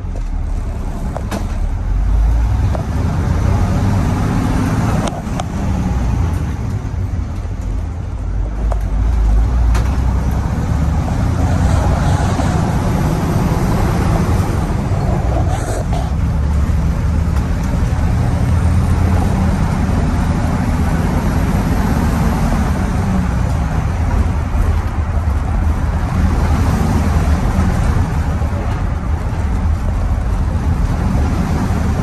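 Cummins 855 Big Cam inline-six diesel of a 1983 Crown tandem bus pulling away and accelerating under load, a loud low rumble heard from the driver's seat, with brief dips in level as the five-speed is shifted.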